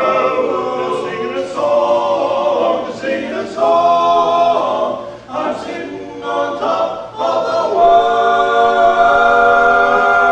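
An a cappella choir singing in close harmony, with no instruments, settling into one long held chord over the last two seconds.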